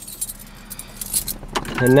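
A bunch of car keys jangling, a quick cluster of light metallic clinks around the middle.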